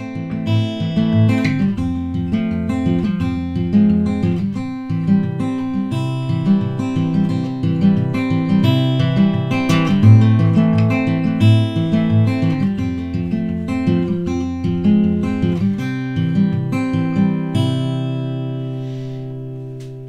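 Martin OM-21 Special steel-string acoustic guitar fingerpicked in a Travis picking pattern: an alternating thumb bass under higher melody notes, ending on a chord left ringing out for the last couple of seconds.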